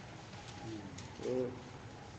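A dove cooing faintly in the background, with one short low coo about a second in and a fainter one just before it.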